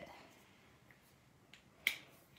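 Faint room tone, then a single sharp click near the end.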